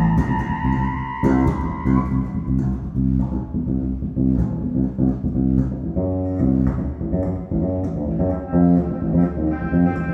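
Free improvisation duo of bass clarinet and electric bass guitar. The bass plays a busy stream of plucked low notes with sharp attacks. The bass clarinet holds sustained, sliding notes above it in the first couple of seconds, then comes back in the last few seconds.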